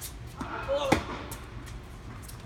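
A tennis ball hits hard during an indoor hard-court rally: one sharp impact about a second in. It comes just after a short, bending squeak-like sound.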